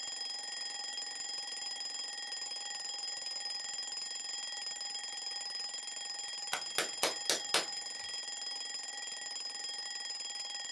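A small alarm clock ringing with a steady, unbroken tone. A little past the middle come five quick clicks as it is handled, and the tone keeps going through them.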